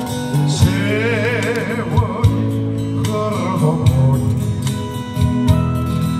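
A man singing into a microphone through a street PA, over accompaniment with a steady beat and guitar. About a second in he holds a long note with wide vibrato.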